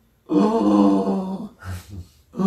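A man's voice holding one steady sung vowel tone for about a second, demonstrating vocal sound made while breathing in, followed by a short breathy rush of air.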